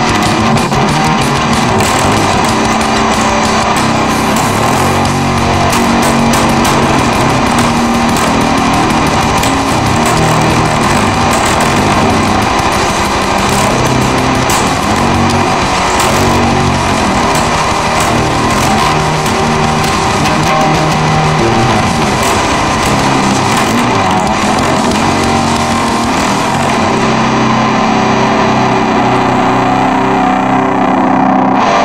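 Hard rock / heavy metal track: distorted electric guitar over a loud, dense, steady full-band mix with a regular beat.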